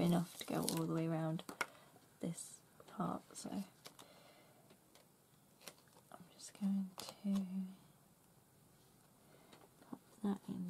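A woman's voice making short wordless hums, one held for about a second near the start and two brief ones about seven seconds in, with small scattered clicks and taps from handling craft materials in between.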